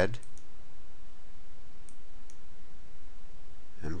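A few faint computer mouse clicks, two just after the start and two about two seconds in, over a steady background hiss.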